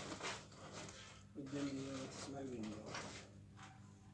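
A voice talking indistinctly, with short clicks and rustles of handling near the start and again about three seconds in.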